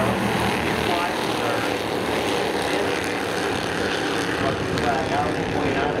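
A pack of Bandolero race cars running together, their small engines making a steady, continuous drone as the field races through the turns, with a faint voice over it.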